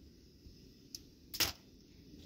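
Dry twigs snapping as they are broken by hand: a faint snap about a second in, then a louder, sharper crack.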